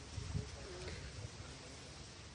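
Faint cooing of a dove: a short low call about half a second in, with soft low thumps just before it.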